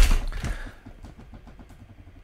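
A sharp thump on a desk, then a softer knock about half a second in, followed by faint quick ticking.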